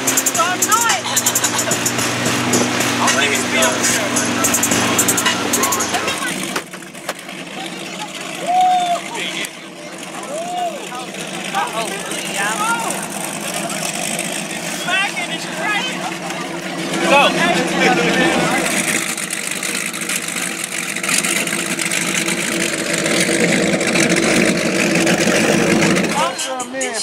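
A boat's motor runs steadily under voices and rushing wind and water. It cuts off abruptly about six seconds in, and outdoor voices and chatter from a group of people carry on to the end.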